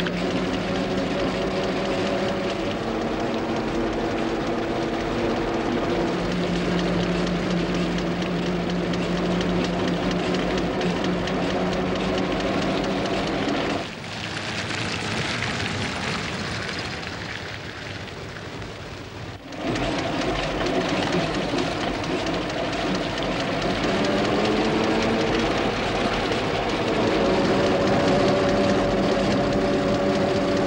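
Rolls-Royce Silver Ghost's six-cylinder engine running as the car drives along, a steady drone that shifts pitch a few times and climbs near the end. For about six seconds in the middle it gives way to a quieter rushing noise.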